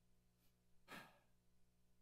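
Near silence with a faint steady hum; about a second in, a man sighs briefly into the microphone, his voice falling in pitch.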